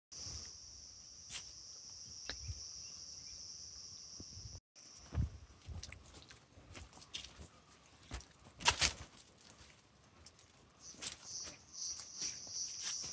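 Insects in the forest giving a steady high-pitched drone, which breaks off suddenly a little under halfway through and comes back near the end. In between are scattered footsteps and rustling in the dry undergrowth, loudest about two-thirds of the way in.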